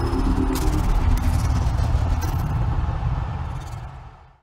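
Channel intro sting: music with heavy bass under noisy whooshing sound effects and a few sharp hits, fading out near the end.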